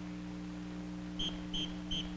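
Short, evenly spaced blasts on a marching-band whistle, about three a second, starting just past halfway; they count off the band's next entrance. A steady low hum runs underneath.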